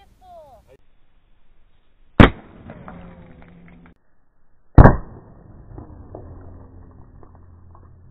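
Two sharp bangs about two and a half seconds apart, the second louder, each trailing off in a ring. They are .22 LR rifle shots at a CO2 cartridge in a wooden box, and the second one bursts the cartridge and blows the box apart.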